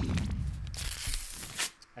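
Scene-transition sound effect: a noisy rushing sweep with a low rumble under it, ending abruptly about three quarters of the way in.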